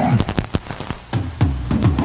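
Music off an FM radio broadcast: a quick run of drum and percussion hits, several of them dropping in pitch, before steady notes begin.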